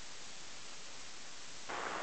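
Steady hiss of an airband radio receiver on a quiet tower frequency, with no one transmitting. Near the end the hiss grows louder as a transmission opens, just before a voice comes on.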